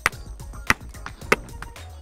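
Three sharp, evenly spaced knocks about two-thirds of a second apart: a hammer tapping on a sedimentary rock outcrop.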